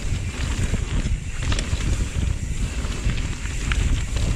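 Wind rumbling over a GoPro action camera's microphone during a fast mountain-bike descent, mixed with the bike's tyres rolling over a packed-dirt trail, with a couple of faint clicks.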